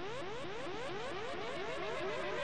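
Electronic sound effect: a short rising pitch sweep repeated roughly every quarter second at an even level, played as the music is started.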